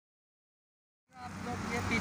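Silence, then road traffic noise from a busy highway cuts in abruptly about halfway through, with the steady rush of passing cars.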